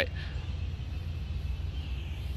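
Steady low rumble of outdoor background noise, with a faint hiss higher up.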